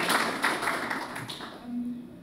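Audience applauding, the clapping dying away about a second and a half in.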